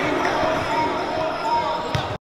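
Live gym sound of a basketball game: the ball bouncing on the hardwood floor amid indistinct voices, echoing in a large gymnasium.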